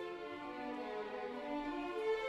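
Symphony orchestra playing, with bowed strings carrying a melodic line that steps downward and then begins to climb.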